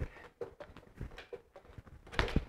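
A few faint, soft knocks of boxing gloves landing on the foam-filled ball of an Everlast Hyperflex Strike reflex bag, a spring-mounted free-standing bag.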